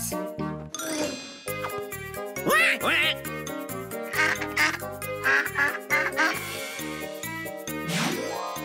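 Cartoon toy duck talking in a run of expressive quacks, over light children's background music.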